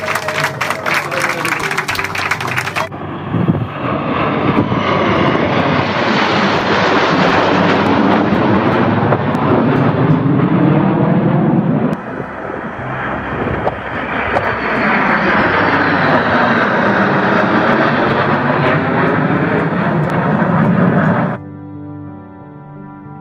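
Applause for about the first three seconds, then a formation of military jets flying over: loud jet engine noise with a swirling sweep in its tone, swelling, dipping about halfway through, and swelling again for a second pass before it cuts off just before the end.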